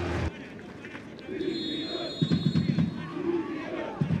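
Football stadium crowd noise: a general hum of spectators with scattered faint voices and shouts, plus irregular low rumbling. A faint, steady high tone sounds for about two seconds in the middle.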